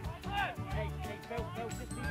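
Background music with a steady bass line, with brief faint shouts from players.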